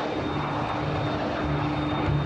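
Twin turbojet engines of a Dassault Mirage IV delta-wing bomber running as it rolls down the runway. The sound is a steady rushing noise with a faint steady whine.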